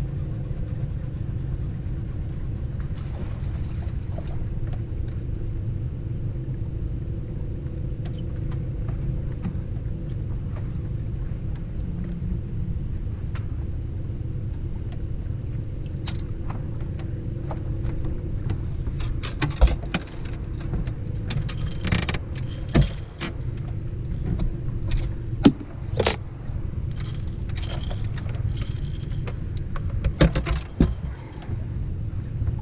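A steady low motor drone with a faint hum in it runs throughout. In the last third, sharp clicks and clanks of fishing gear being handled on the boat break in over it.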